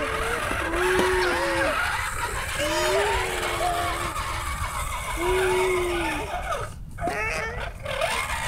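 Drawn-out vocal sounds: several long, held calls with a gently curving pitch, each lasting up to about a second, among shorter voice-like sounds, over a low rumble.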